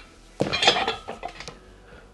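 Metal gym weights set down on the floor at the end of a set: a sudden clatter of clinks about half a second in, ringing briefly before fading.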